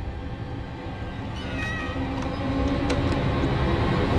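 Wooden door hinge creaking as the door is slowly pushed open, over a low drone of horror-film score that swells louder. A sharp click comes about three seconds in.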